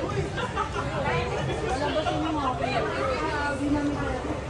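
Indistinct chatter of several people talking at once, voices overlapping over a steady low rumble of the room.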